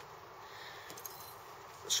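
Quiet room tone with a couple of faint small ticks about a second in; a man's voice starts right at the end.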